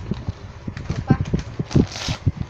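Irregular light knocks and taps, several a second, from gift boxes and wrapping being handled.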